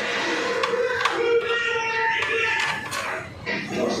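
Background television sound: indistinct voices with music underneath.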